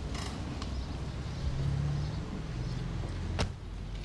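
A car's rear door being shut once, a single sharp clunk near the end, over a low steady rumble.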